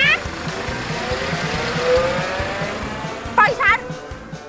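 A car driving off, its engine note rising to a peak about two seconds in and then fading, over background music. A woman shouts at the start and again near the end.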